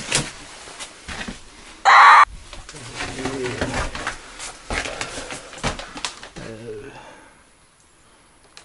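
Footsteps and knocks on a debris-littered wooden floor as someone walks through a small derelict cabin, with one loud, short squeak about two seconds in.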